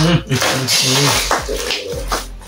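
Plastic Big Aries snack packet crinkling as it is torn open by hand, with a short burst of rustling a little before the middle, over a voice humming.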